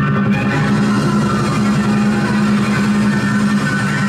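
Loud music playing without a break, with a steady low sustained tone under it.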